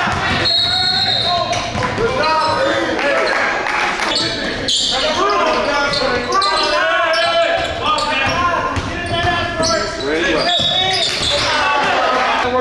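Live basketball game sound: a basketball being dribbled on a hardwood gym floor, with indistinct voices of players and spectators echoing in the gym.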